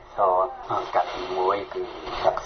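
Speech only: a news reader talking in Khmer, continuous radio-style narration.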